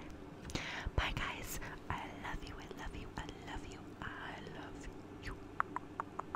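A woman whispering softly close to the microphone, a few breathy phrases without voice, then a handful of short clicks near the end.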